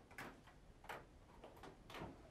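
Near silence in a quiet room, broken by four faint, short clicks or taps spread across two seconds.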